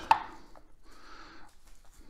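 A single sharp knock on a wooden cutting board about a tenth of a second in, followed by faint soft handling sounds as cut raw ribeye steaks are moved on the board.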